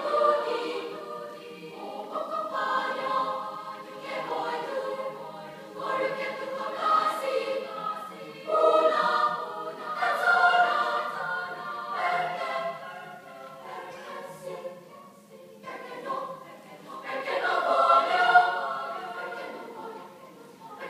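School choir singing in parts, its phrases swelling and falling back, with a quiet passage about three-quarters of the way through before a loud swell near the end.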